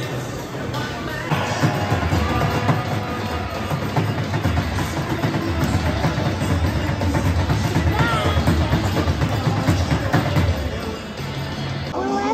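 Loud music with a heavy, pulsing bass beat played over an ice rink's PA system, kicking in louder about a second in.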